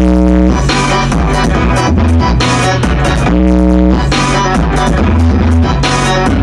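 Electronic dance music with a heavy, deep bassline played loud through a subwoofer, its cone visibly moving. A held synth chord sounds at the start and again about three and a half seconds in.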